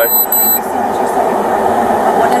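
Steady noise inside a running patrol car's cabin, with a short high electronic tone in the first half second.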